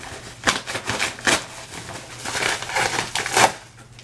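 A package being opened by hand: rustling, crinkling and scraping of its wrapping, with four sharper strokes.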